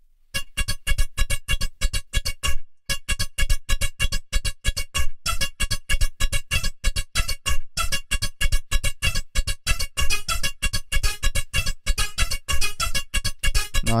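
Live looped beatbox routine played on a loop station: a fast, even beat of vocal percussion, about five hits a second, layered under a held synth-like melody. The loop cuts out briefly about two and a half seconds in and then comes back.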